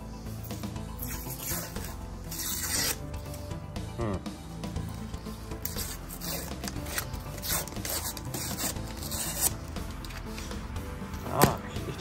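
The paper wrapper of a cardboard tube of refrigerated bread-roll dough being peeled and torn off in several rasping strips, then a sharp crack near the end as the tube splits open.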